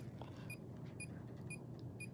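GQ EMF-390 field meter beeping faintly: short, high beeps about twice a second.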